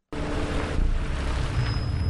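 A car driving along a street, with a steady engine and road rumble.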